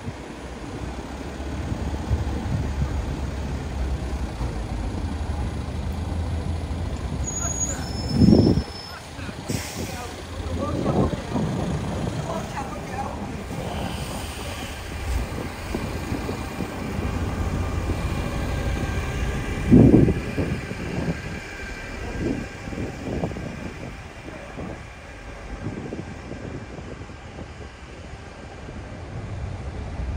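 Heavy city traffic with a refuse truck and a double-decker bus running close by, a steady low engine rumble. Two short, louder sounds stand out about eight and twenty seconds in.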